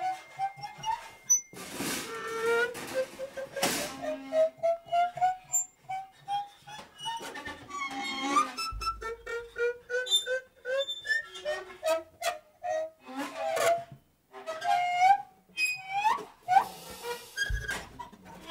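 Free-improvised drums, percussion and live electronics. Thin squeaking, whistle-like tones glide slowly upward over a scatter of small clicks, taps and brief scraping bursts.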